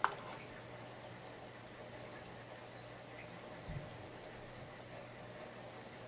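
Quiet handling while a fabric hem is folded and pressed with a clothes iron: a small sharp click at the start and a soft low thump almost four seconds in, over a faint steady hum.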